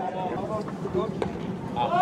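Scattered spectators' voices and low chatter, with one short sharp click a little over a second in.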